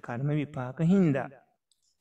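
A man speaking Sinhala in a lecture over a video call, his voice stopping about three-quarters of the way in.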